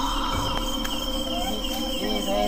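Crickets chirping: a steady, high, pulsing trill that keeps on without a break.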